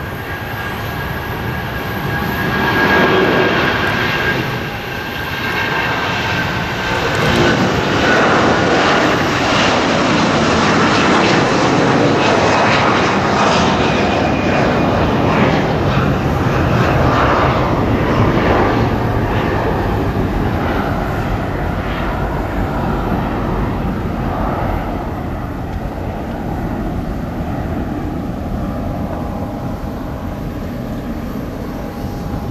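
Twin-engine jet airliner taking off, its jet engines at takeoff thrust: a loud rushing jet noise with a faint high whine that builds over the first few seconds, stays loud as the plane lifts off and climbs, and slowly eases near the end as it climbs away.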